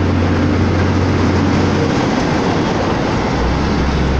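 Vehicle engine hum and road noise heard from inside the cab while driving at highway speed, steady throughout. About two seconds in, the low engine hum drops in pitch and stays lower.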